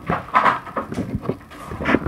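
Handling noise from a sheet of craft foam and a metal ruler being laid on a wooden board: a few short knocks and rustles.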